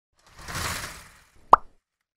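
Logo-intro sound effects: a soft whoosh that swells and fades, then a single sharp pop about a second and a half in.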